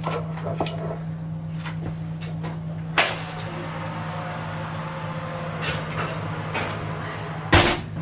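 Oven door and metal muffin tray handled in a kitchen: a few light clicks, a sharp knock about three seconds in and a heavier thump near the end, as the tray goes in and the door shuts. A steady low hum runs underneath.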